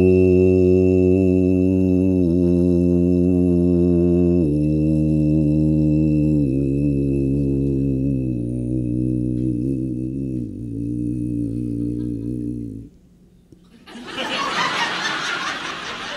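A man's deep throat singing, or belly music: a very low droning voice with a thin whistling overtone held steady high above it. The drone steps down in pitch in several stages over about thirteen seconds, then stops. About a second later the audience answers with noise of applause and voices.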